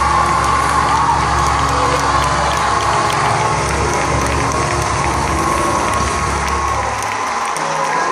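The end of a song on a long held low chord while a church congregation cheers and applauds; the music stops about seven seconds in, and the clapping and cheering carry on.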